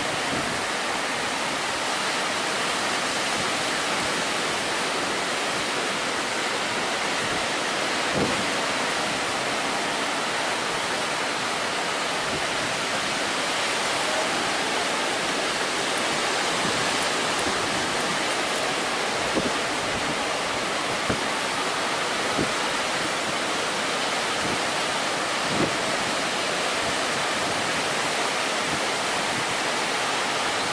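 Atlantic surf washing steadily onto the beach in an unbroken hiss, with a few short low bumps spread through it.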